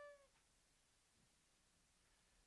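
A held wooden flute note dips slightly in pitch and stops about a quarter second in, followed by near silence.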